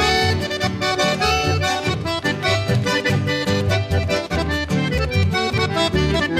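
Instrumental break in a Chaco folk song: accordion playing a quick run of notes over a pulsing bass accompaniment.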